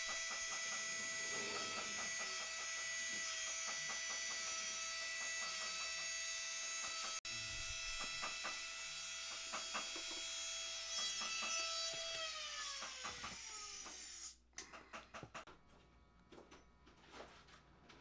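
A jeweller's rotary engraving handpiece with a diamond flywheel cutter runs at a steady high whine, with light ticking as the wheel cuts diamond-cut facets into a pure gold bangle. About twelve seconds in, the motor is switched off and its whine falls as it spins down. The sound then breaks off, and a few faint clicks follow.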